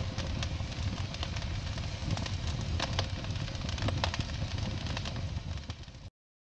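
Crackling fire-and-sparks sound effect from a logo intro: a steady hiss dotted with many sharp crackles, fading out near the end.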